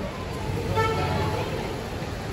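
A vehicle horn gives one short toot, under a second long, about half a second in. It sounds over the steady rumble of street traffic.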